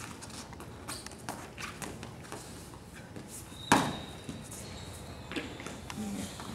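Wrestlers moving on a gym wrestling mat: light shuffles and taps of feet and bodies, then one loud thump a little past halfway as a wrestler is taken down onto the mat, followed by a thin high squeak lasting a couple of seconds.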